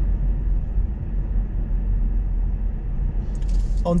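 Car cruising at about 40 km/h, heard inside the cabin: a steady low rumble of engine, tyre and road noise. A man's voice begins right at the end.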